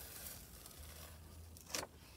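A sheet of paper being peeled off a paint-coated gel printing plate: faint, with one short crisp rustle near the end.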